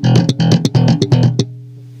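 Electric bass played slap style: a quick run of thumb slaps, left-hand muted ghost notes and muted plucks in a repeating pattern. About three quarters of the way in it stops, leaving one low note ringing and slowly fading.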